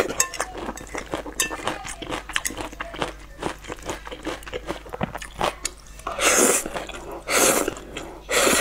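Close-up mouth sounds of eating thick noodles: wet chewing with many small clicks and smacks for about six seconds, then two loud slurps as noodles are sucked in near the end.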